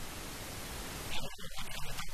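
Steady hiss of background noise during a pause in a sermon; about a second in, a man's voice resumes in short broken snatches.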